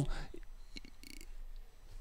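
A pause in a man's speech: quiet room tone with a short faint breath a little after a second in, and small mouth noises.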